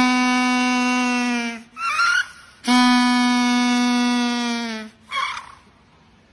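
A penguin calling with its beak wide open: two long, steady, even-pitched calls of about two seconds each, each dipping slightly in pitch at the end. A short, rougher sound comes between the calls and another follows about five seconds in.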